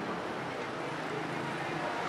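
City street ambience: a steady murmur of traffic and distant voices.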